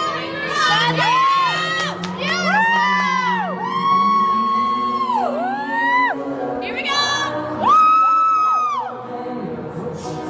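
Spectators whooping and cheering: a string of long, high-pitched calls from several voices that rise and fall and overlap, the loudest just before the end.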